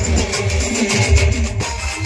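Loud live band dance music from a village star band: a heavy, repeating bass-drum beat under a sustained melody line.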